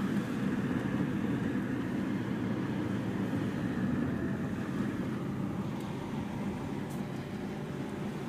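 Steady engine and tyre noise of a car driving, heard inside the cabin, easing slightly in the second half.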